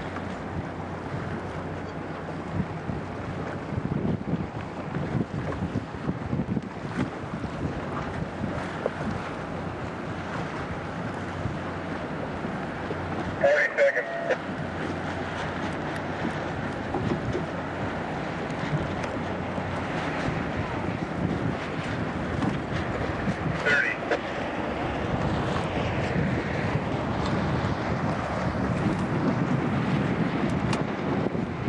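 Wind buffeting the microphone over the steady rush of an E scow sailing. Two short high-pitched sounds stand out, about 14 seconds in and again near 24 seconds.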